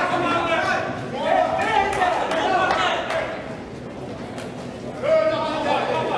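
Spectators' and coaches' voices calling out in a reverberant sports hall during a boxing bout, dying down in the middle and rising again about five seconds in, with a few faint sharp knocks in the quieter stretch.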